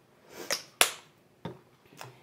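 Kitchen utensils knocking as measuring spoons are handled over a stainless steel mixing bowl: a brief scrape, then a sharp click a little under a second in, and a smaller knock about half a second later.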